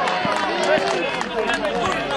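Several men talking and shouting at once, voices overlapping, in the excited aftermath of a goal being scored.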